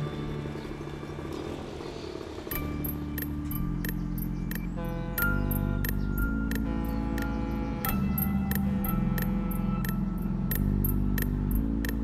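Background music: sustained low chords that change every second or so, joined a couple of seconds in by a light, steady tick of percussion, about three a second.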